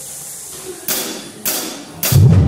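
Two sharp hits on a drum kit about half a second apart, each with a ringing tail, over a low steady hum.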